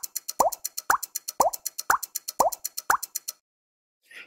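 Logo sound effect of bubble plops, each a quick upward pop, about two a second, over a fast high ticking; both stop suddenly about three seconds in, leaving silence.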